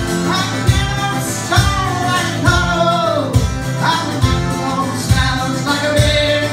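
Strummed acoustic guitar in a steady rhythm with a man singing drawn-out, sliding notes, amplified through a PA.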